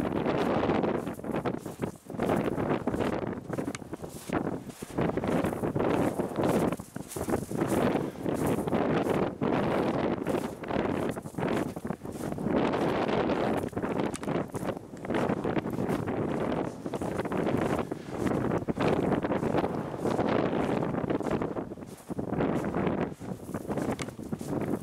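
Wind buffeting the microphone: a loud, continuous rushing that rises and falls in gusts, with brief lulls.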